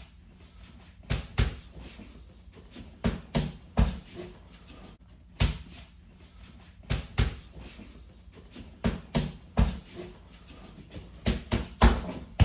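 Boxing gloves smacking into focus mitts in quick combinations of two or three punches, with a pause of a second or so between combinations.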